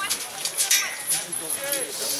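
People talking, without clear words, with a few short knocks or clicks mixed in about two-thirds of a second in.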